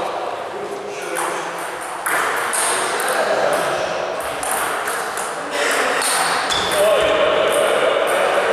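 Table tennis balls clicking at irregular intervals off tables and bats, with voices in the background.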